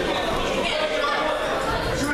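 Several people talking at once: indistinct, overlapping chatter with no words standing out.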